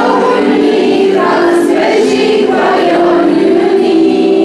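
A choir of girls and young women singing together, holding sustained notes.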